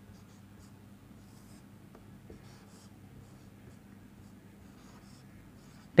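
Marker pen writing on a whiteboard: a run of short, faint strokes and squeaks as an expression is written out, over a faint steady low hum.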